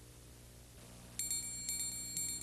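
A quiet low hum, then about a second in, high bright chiming tones ring out and shimmer: the opening of a music sting.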